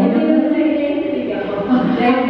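A voice singing long held notes that step from one pitch to the next.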